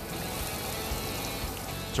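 Tap water running steadily into a steel sink, with background music underneath.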